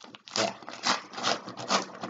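Rhythmic scraping strokes, about one every half second, as a mailed package is worked open by hand.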